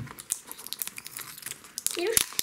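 Wrapping on a toy surprise ball crinkling and tearing as it is peeled open by hand: a rapid, irregular run of small crackles.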